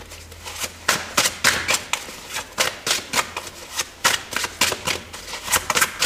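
A deck of tarot cards being shuffled by hand: irregular crisp card snaps and slaps, roughly two a second.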